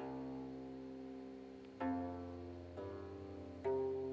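Korean plucked zither played solo: a chord is plucked right at the start and rings on, slowly fading, then single notes are plucked about two seconds in and twice more before the end, each ringing out.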